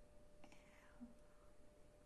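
Near silence with a faint steady hum. About half a second in, a soft mouth click is followed by a faint whisper that falls in pitch.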